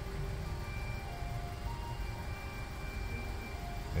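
Steady low background rumble with faint thin tones of different pitches coming and going over it; no distinct tool clicks stand out.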